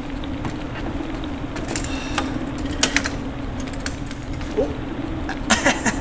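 A steady low hum with scattered sharp clicks and crackles, the clearest of them about three seconds in and again near the end.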